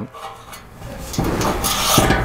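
Rubbing and scraping as a motorcycle fuel gauge and its wiring are drawn up and out through the opening in the fuel tank, growing louder about a second in.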